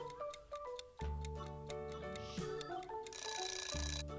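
Light background music of short pitched notes. About three seconds in, a brief, louder ringing burst of under a second sounds: a timer sound effect marking the end of an on-screen countdown.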